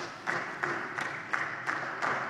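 Applause from the members of a parliament chamber, with single sharper claps standing out about three times a second.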